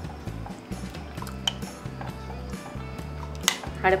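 Metal spoon stirring melted white chocolate and cream in a glass bowl, clinking against the glass a few times with the sharpest clink near the end, over background music with steady low notes.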